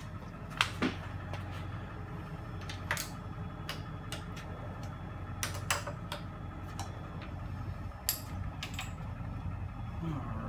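Steady low workshop hum with a scattering of light clicks and knocks, about a dozen, from tools and parts being handled at a milling machine.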